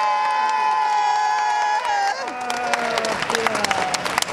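A welcoming crowd cheering, with several long drawn-out shouts held for about two seconds that then slide down in pitch, and clapping building up in the second half.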